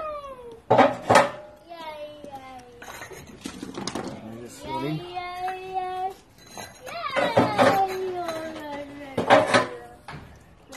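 A small child making long, sing-song wordless vocal sounds, broken by several sharp clunks of refractory bricks being set on the steel floor of the oven's cooking chamber. The loudest clunks come about a second in and near the end.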